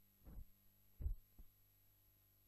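Two faint, short low thumps, about three-quarters of a second apart, over a steady low hum.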